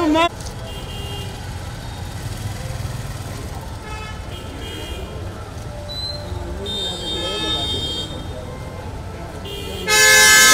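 Vehicle horns honking in street traffic: short toots about four seconds in, a longer honk around seven to eight seconds, and a loud blast starting just at the end, over people talking.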